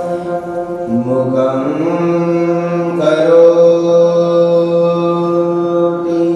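A man's voice chanting verses in long held notes, sliding up in pitch about a second in and again near the middle before settling on a steady note.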